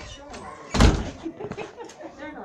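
A single loud thump about a second in, over the chatter of people in a large room.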